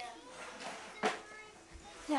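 Faint voices in a small room, with a single sharp knock about halfway through.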